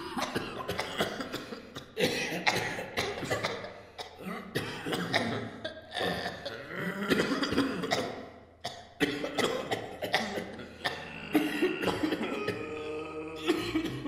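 A dense, irregular run of human coughs and throat-clearing sounds, one after another with barely a gap, with short voiced fragments in between.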